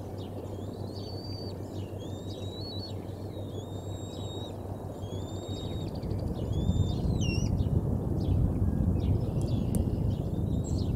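Birds singing around the nest in a series of short whistled, sliding phrases, over a low rumbling noise that grows louder about six and a half seconds in.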